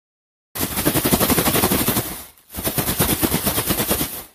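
Plastic bag being handled and crinkled, with a loud, dense run of rapid crackles that stops briefly about halfway through and then resumes.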